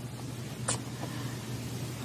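Low steady hum and hiss of background noise, with a single short click a little after half a second in.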